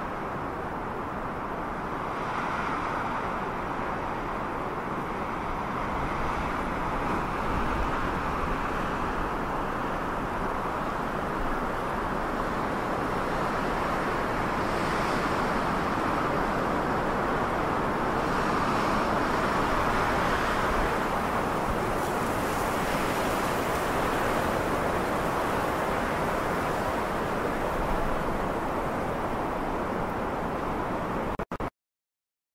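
Steady rushing noise without any music, like wind or road ambience, swelling gently a few times and a little louder through the middle.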